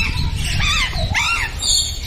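A large parrot calling: two wavering calls in quick succession, each rising and then falling in pitch.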